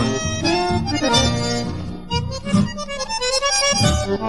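Instrumental passage of a chamamé song between sung lines: an accordion plays the melody over a plucked bass accompaniment.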